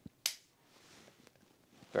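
Steyr 7.65 mm tip-up-barrel pistol being cocked by hand: one sharp metallic click about a quarter second in, followed by a few faint small clicks of the action.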